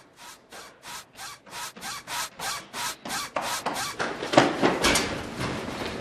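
Running footsteps on a hard hallway floor, about three a second, growing louder as the runner approaches. Near the end come a few louder knocks and scuffs.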